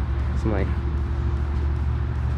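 A steady low rumble runs throughout, with one short spoken word about half a second in.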